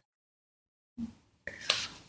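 Dead silence for about a second, then a short faint click and a soft breath or mouth noise from a speaker about to talk.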